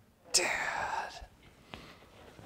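A voice saying the single word "Dad", with a short click a little later.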